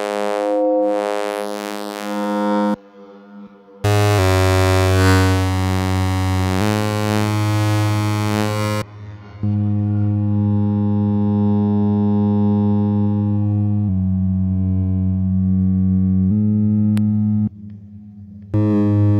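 Expert Sleepers Disting mk4 eurorack module running as a wavetable oscillator, playing a sequence of long held synth notes. Pitch and timbre change every few seconds, from bright and buzzy to mellower tones, with short quieter gaps about three seconds in and near the end.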